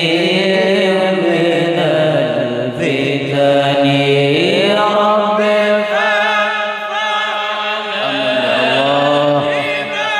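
Group of men chanting an Arabic devotional syair together, unaccompanied, in long held notes that glide slowly from one pitch to the next.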